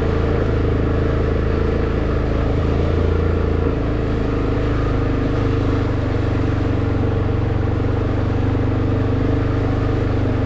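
Four-wheeler (ATV) engine running steadily at low speed on a rocky downhill trail; its note steps up slightly about four seconds in.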